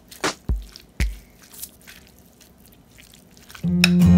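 A spoon stirring a chunky tuna and vegetable salad in a bowl: a few wet squishing, knocking strokes in the first second and a half, then quiet. Acoustic guitar music comes in near the end.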